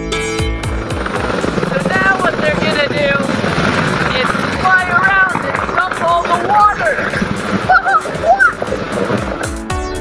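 Firefighting helicopter running, with a steady rotor and engine noise as it lifts off the helipad, and a voice calling out over it.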